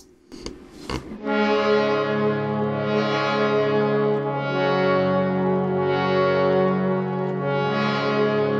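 Harmonium holding a sustained chord, played solo, starting about a second in. The reeds sound steadily while the tone swells brighter and softer a few times.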